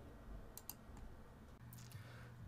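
Faint computer mouse clicks in near silence: two close together a little past half a second in, and a couple more near the end.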